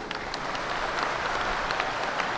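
Audience applauding steadily: a dense patter of many hands clapping.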